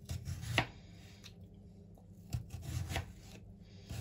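Kitchen knife cutting a cucumber on a cutting board, in two bouts of short strokes about two seconds apart. The first bout ends in a sharp knock of the blade on the board about half a second in.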